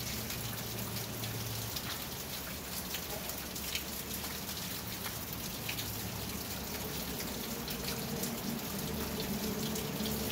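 Rain pattering on the roof of a covered riding arena: a steady hiss scattered with small drop ticks, over a faint low hum.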